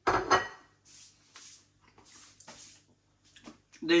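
Crockery knocked down on a kitchen worktop with a brief ringing clatter, followed by a few soft handling sounds. A man's voice starts near the end.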